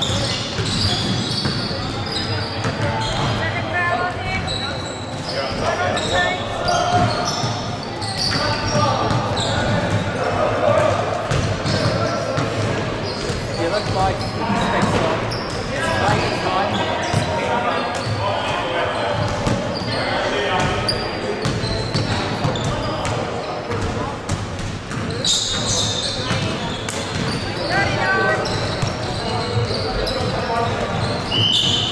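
Basketball game in a large gym: a ball bouncing on the wooden court amid the chatter and calls of players and spectators, echoing in the hall.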